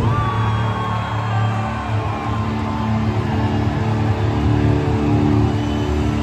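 A hard rock band playing live at arena volume, heavy electric guitar chords held long over a strong low end.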